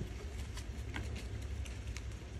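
A stack of paper banknotes being folded and handled: faint paper rustling with a few light crackles.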